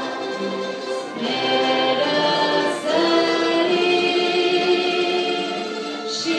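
Choir singing a sacred song with orchestra accompaniment in long held chords, moving to new chords about one second and three seconds in.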